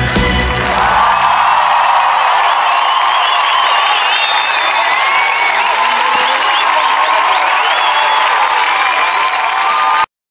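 The last note of the band ends within the first second. A large audience then cheers and applauds, with high shrieks and whoops over the clapping. The sound cuts off suddenly at the end.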